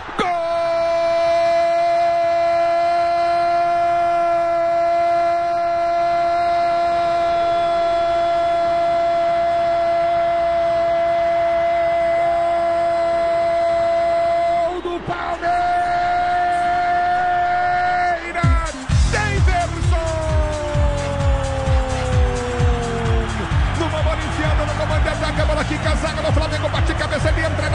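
Brazilian radio commentator's goal cry, a single high 'gol' held at one pitch for about fifteen seconds, broken for a breath, then held again for a few seconds more. After that a goal jingle with a steady beat comes in, with the voice sliding down in pitch over it.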